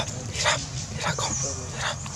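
Baby monkey giving three short, harsh squealing cries, about two-thirds of a second apart, as a larger monkey grabs at it.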